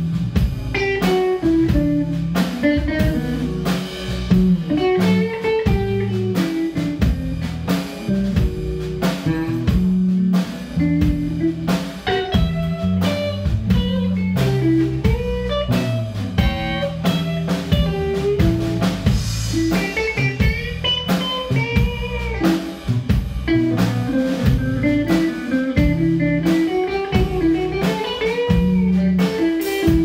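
Live blues band playing an instrumental stretch with no vocals: electric guitar over bass guitar and drum kit, the guitar bending notes, most clearly about two-thirds of the way through.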